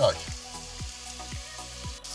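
Sliced leeks and carrots sizzling steadily in hot butter in a stainless steel pot as they sweat.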